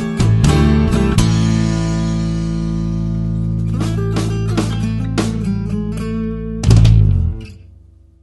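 Blues-rock band ending a song. A few quick guitar strokes lead into a long held chord that rings for about five seconds, with some notes picked over it. About seven seconds in comes a final loud chord hit with bass and drums, which dies away.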